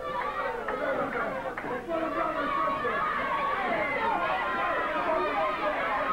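Studio wrestling audience talking and shouting over one another, a steady babble of many voices with no single voice standing out.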